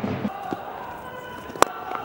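Low stadium crowd murmur, then a single sharp crack of a cricket bat striking the ball near the end.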